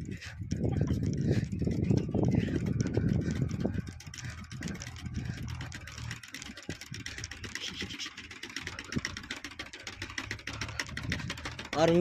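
An engine running steadily in the distance as a low hum, under heavier rumbling noise for the first four seconds or so.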